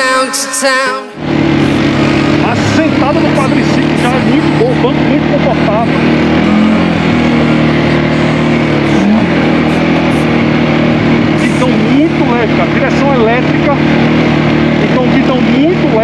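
Music for about the first second, then a CFMoto CForce ATV's engine running steadily as the quad rides along a dirt trail.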